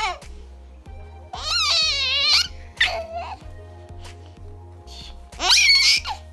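A nine-month-old baby giggling and squealing in high-pitched, wavering bursts: a longer one about a second and a half in, a short one around three seconds, and another near the end.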